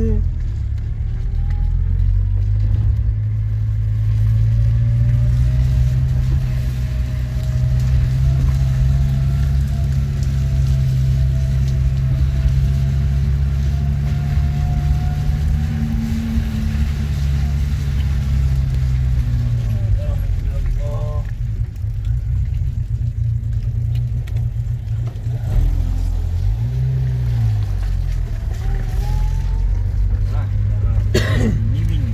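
A car driving along wet streets, heard from inside the cabin. A steady low engine drone runs throughout, its pitch drifting slowly up and down with the speed, under road and tyre noise.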